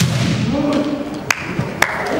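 Sharp wooden clacks of bamboo shinai, three or four short knocks as kendo fighters lower and put away their swords at the close of a bout. Between them a voice holds one drawn-out call.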